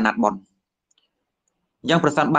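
A man speaking Khmer in a Buddhist sermon. He stops about half a second in, there is dead silence for over a second, and he speaks again near the end.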